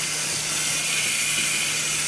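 Kitchen tap running into a stainless steel sink: a steady hiss of water, a little louder through the middle.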